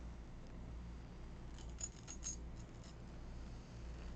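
Faint crisp crackles of a crunchy baked corn snack (Pipcorn cinnamon sugar twist) being chewed: a few small, sharp clicks between about one and a half and three seconds in, over a low steady hum.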